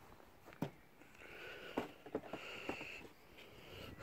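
A few faint, short knocks as a plastic car bumper is handled and set down onto a wooden stand.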